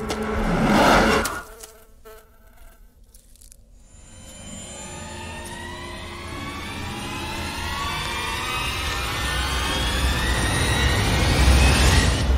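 Film sound effect of a housefly's buzzing wings: a loud whoosh as the fly darts past in the first second or so, then after a short lull a buzz that rises steadily in pitch and grows louder to the end.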